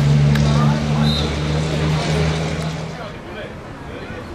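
A steady low engine hum that fades away about three seconds in, heard under voices.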